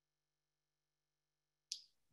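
Near silence, then near the end a single short, sharp click that dies away quickly.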